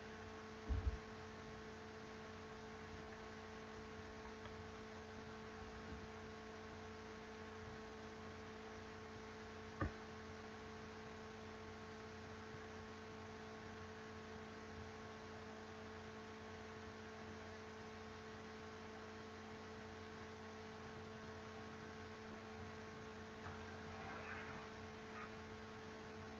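Steady low electrical hum over faint hiss, with two soft low thumps just under a second in and a single sharp click about ten seconds in.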